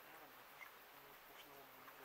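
Near silence with the faint, steady buzz of a flying insect, clearest in the second half.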